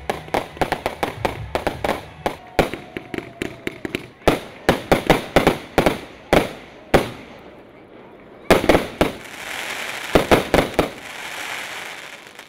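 Fireworks finale: a rapid series of sharp bangs from aerial shells and fireworks batteries bursting, ending in a dense crackling that fades out.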